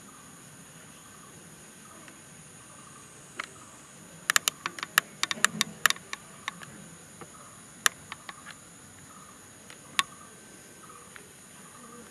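Steady high-pitched insect drone with faint repeated chirps. A quick run of about a dozen sharp clicks starts about four seconds in, and a few single clicks follow later.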